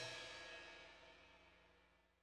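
A cymbal's ring fading out as the last note of the song dies away, gone within the first second, then near silence.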